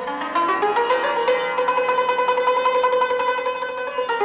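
Persian santur, a hammered dulcimer struck with two wooden mallets, playing the instrumental opening of a classical Persian song in quick repeated strokes, settling about a second in into a fast tremolo on one note.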